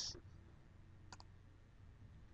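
Near silence with a faint low room hum, and a single faint click about a second in from the computer being used to copy and paste a URL.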